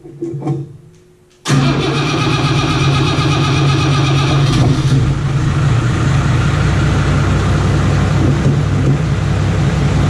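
Six-cylinder Iveco turbo diesel engine in an M3 Stuart tank starting up. It catches abruptly about a second and a half in and runs steadily after that, with a higher-pitched part that fades out about three seconds later. Heard from inside the tank's steel hull.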